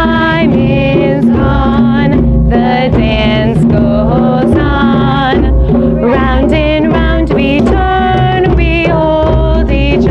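A class of children singing a round-dance song in unison over djembe hand drums beating a steady repeating rhythm.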